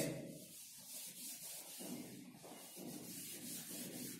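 Whiteboard eraser rubbing marker writing off a whiteboard: faint, repeated back-and-forth wiping strokes.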